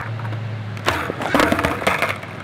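A skateboard's deck and wheels clattering on asphalt: a run of sharp knocks starting about a second in, as the board hits and tumbles on the ground.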